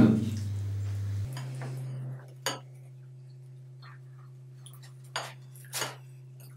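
A few short, sharp clinks of plates being handled as people eat at a table laden with dishes: one about two and a half seconds in and two close together near the end, over a low steady hum.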